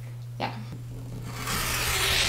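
Rotary cutter blade rolling through fabric along a ruler onto a cutting mat: a rasping cut that starts past halfway and lasts about a second.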